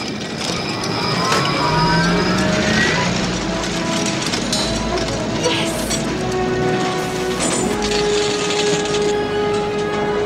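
Sci-fi sound effect of a magnet-powered flying ship's engine powering up: a rising whine over the first three seconds over a low rumble, then held electronic tones under background score music.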